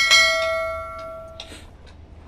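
Notification-bell sound effect of a subscribe-button animation: one bright, multi-tone ding that rings for about a second and a half, then cuts off suddenly.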